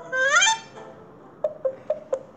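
Cartoon sound effects from a children's story app: a rising, reedy pitched glide lasting about half a second, then a few quick short notes in the second half.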